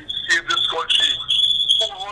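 A steady, high-pitched feedback whistle over garbled voices on a phone-in line: the caller's television is turned up, so the broadcast loops back through the call.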